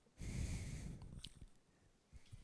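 A single audible breath picked up close on a handheld microphone, lasting about a second and fading out.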